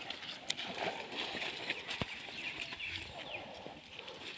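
An elephant dragging a log through wet mud, with scraping and squelching and a scatter of sharp clicks and knocks, the strongest about half a second in and about two seconds in.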